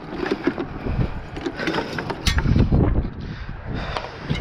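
Wind rumbling on the microphone, loudest a little after the middle, with irregular clicks and knocks from the spinning reel and rod being handled while an angler fights a hooked fish.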